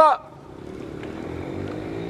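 A motor vehicle's engine running with a low, steady hum, growing gradually louder as it approaches.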